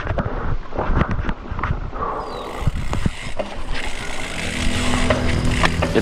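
Mountain bike rattling and clattering over a rocky, technical singletrack, with rapid sharp knocks and clicks from the tyres, frame and chain, busiest in the first couple of seconds. A steady low hum comes in near the end.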